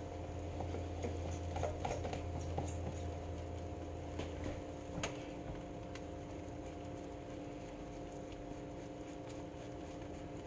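A table knife spreading butter on slices of soft white bread, with light scrapes and ticks that are busiest in the first few seconds. A steady low hum runs underneath.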